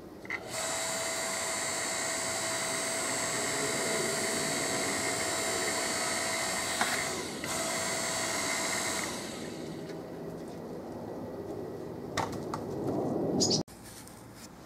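Homelite log splitter's motor and hydraulic pump running with a steady whine, breaking off briefly about seven seconds in and stopping around nine seconds. Near the end come a couple of sharp knocks and a rising, louder noise that cuts off suddenly.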